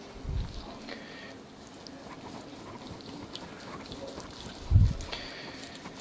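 Knife and gloved hands working smoked beef on a wooden cutting board: two dull low thuds, about half a second in and near five seconds, with faint small clicks in between.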